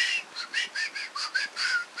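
A man making rapid whistly, hissing chirps with his mouth, about five a second, each with a small pitch glide. He is mimicking the dry, zippy fizz of the beer on the tongue.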